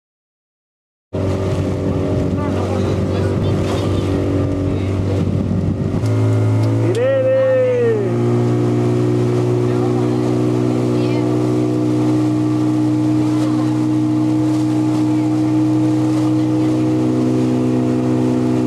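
Motorboat engine running steadily at speed, with water and wind noise; its note firms up and grows slightly louder about six seconds in. A voice calls out briefly around the middle.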